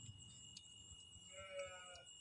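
Near silence with a steady, faint, high-pitched drone of night crickets. A brief faint pitched sound comes about one and a half seconds in.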